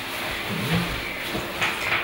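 A metal ladle scooping soup from a stainless steel pot and pouring it into a bowl, with light scraping and a soft clink, over a steady background hiss.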